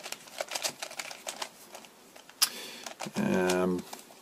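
3x3x3 Mixup Plus plastic puzzle cube clicking as its layers are turned by hand, a quick irregular run of small clicks with a sharper clack about halfway through. A short hummed voice sound comes in near the end.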